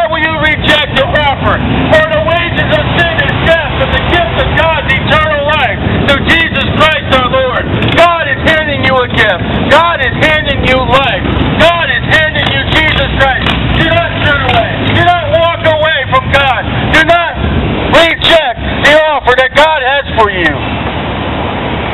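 A man's loud, unintelligible shouted preaching over street traffic, with motorcycles and cars passing.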